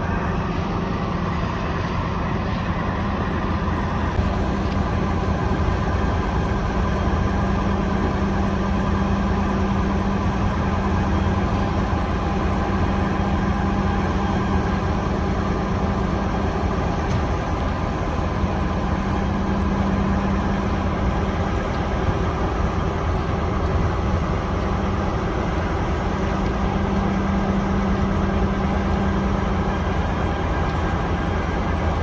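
Flatbed tow truck's engine running steadily while its tilted bed is lowered to level under the load of a minibus. It gives a constant low drone whose upper hum fades and returns a few times.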